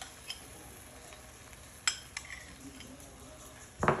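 A butter knife clicking against a small bowl and a cast iron skillet as softened butter is scooped out and spread on bread, a few sharp clinks with the sharpest about halfway through. A faint sizzle comes from the hot skillet.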